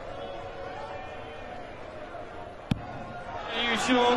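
A steel-tipped dart striking a bristle dartboard with one sharp tick nearly three seconds in, over a steady murmur of the arena crowd. The crowd then breaks into loud cheering near the end as the dart wins the leg on the double.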